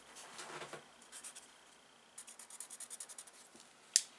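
Felt-tip sign pen colouring on drawing paper: soft scratchy strokes, then a quick run of short back-and-forth strokes at about ten a second. A single sharp click near the end.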